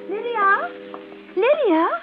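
A held music chord dies away about a second and a half in, under a woman's voice gliding widely up and down in pitch in two drawn-out phrases.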